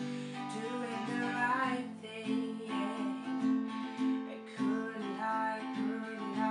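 Acoustic guitar strummed in a steady rhythm, with a woman singing over it in the first couple of seconds.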